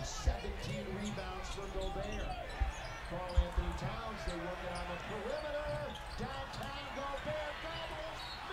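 Basketball game broadcast audio at low level: a ball dribbling on the hardwood court, with a few sharp bounces a little before halfway, under faint commentator speech.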